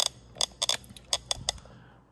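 A quick run of about seven light, sharp clicks and clinks over a second and a half, from handling a plastic PCV hose fitting under a car's hood.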